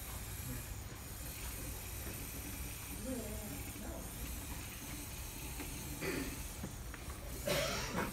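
Steady room hiss and low hum, with faint voices talking in the background about three, six and seven and a half seconds in.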